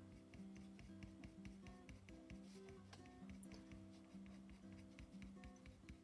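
Soft background music with held notes, faint under a light, rapid scratching of a Prismacolor colored pencil making short strokes on paper.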